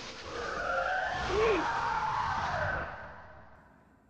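Screeching monster roar on an anime soundtrack, a titan's cry as Ymir transforms. It swells early, holds with gliding pitch and fades away near the end.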